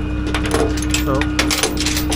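A quick run of light metallic clicks and clinks, hardware being handled on the tow truck bed, over the steady drone of a running truck engine.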